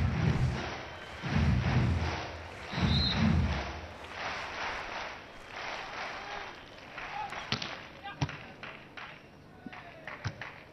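Stadium crowd at a beach volleyball match, with a loud low thump about every second and a half through the first four seconds. A short high referee's whistle sounds about three seconds in. It then goes quieter, with a few sharp ball hits between about seven and eight and a half seconds.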